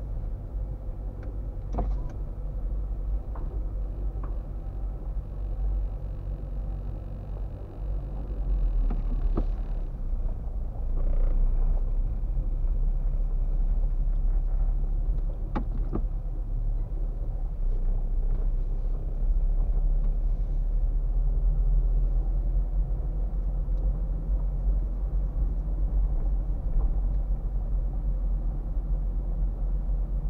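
Car cabin noise as heard from behind the windscreen: steady low engine and road rumble while driving slowly, getting louder about nine seconds in as the car picks up speed. A few sharp clicks come through, one about two seconds in and others around nine and sixteen seconds.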